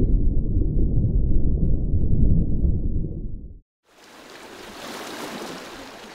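A loud, muffled low rumble cuts off abruptly about three and a half seconds in. After a moment of silence comes the quieter, steady hiss of small waves lapping a rocky shore.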